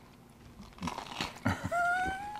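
Crunchy bite into a slice of toasted bread, with a few short crackling crunches a little under a second in. Just before the end, a drawn-out pitched sound, slightly rising, begins.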